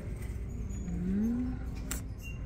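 A woman's soft, rising hummed "hmm" about a second in, over a steady low rumble of room noise, with one sharp click near the end.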